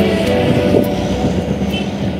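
Steady engine drone of heavy construction machinery, an excavator and a wheel loader, mixed with background music with held tones.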